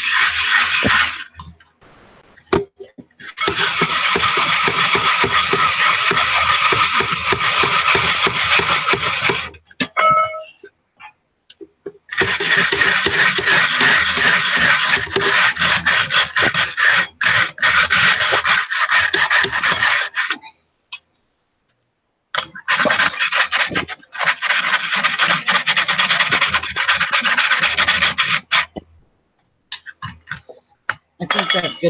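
Fingers rubbing and pressing powdery bath bomb dry mix of baking soda and sea salt through a fine stainless wire-mesh sieve. It makes a scratchy, grainy rasp in three long spells, with short pauses between them.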